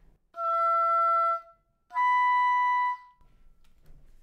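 Oboe playing two held notes of about a second each, with a short break between them. The first is E natural on the standard half-hole fingering. The second is the B natural a fifth higher, played with the harmonic fingering: half-hole closed and second octave key added.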